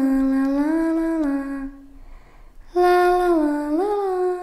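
A voice humming a slow, wordless, lullaby-like melody in two phrases, each held on a few steady notes that step down and up, the second rising near the end.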